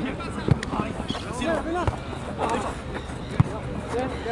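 Players' voices calling on a football pitch, with three sharp thumps of a football being kicked, the loudest near the end.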